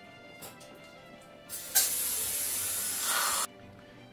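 Dental air-water syringe spraying into the mouth: one steady hiss of about two seconds, starting about one and a half seconds in and cutting off sharply. Soft background music runs underneath.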